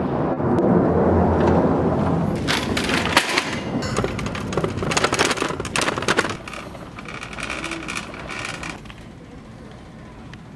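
Shopping cart rattling and clattering as it is taken and pushed along, with a run of sharp clicks and clanks from its wheels and basket in the middle seconds that dies away near the end.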